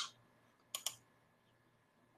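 Two quick computer clicks close together, about three-quarters of a second in, advancing the presentation slide; otherwise faint room tone.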